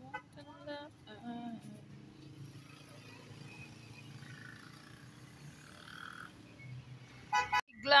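Faint background voices talking for the first second or two, then low, steady outdoor ambience with nothing prominent.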